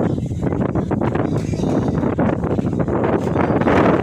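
Wind buffeting the phone's microphone: a loud, steady rumble broken by irregular gusty thumps.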